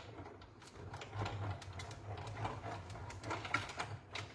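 Hand-cranked die-cutting and embossing machine being cranked, pulling a plate sandwich with paper on leaf-shaped cutting dies through its rollers: a low hum under a run of irregular small clicks.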